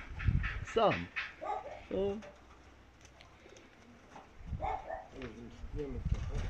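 Domestic pigeons cooing: low coos about a second and a half in and again near the end.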